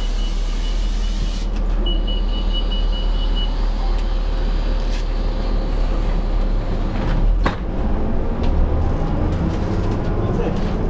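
Inside a New Flyer D40LF diesel bus, its Cummins ISL engine idling with a steady low rumble. A high, steady electronic beep sounds over the first three and a half seconds, with one short break. About seven and a half seconds in, the engine note rises as the bus pulls away.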